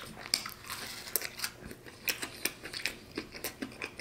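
Close-up chewing of a mouthful of fried chicken and cornbread waffle: wet mouth clicks and small crunches, irregular and several a second.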